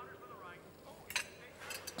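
Faint clinks of cutlery on dishes at a dinner table: one sharp clink about halfway through and a few quick lighter ones near the end, over a low murmur of voice.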